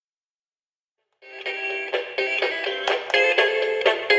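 Dead silence, then about a second in a short promotional jingle starts up: a pitched musical tune with a steady beat.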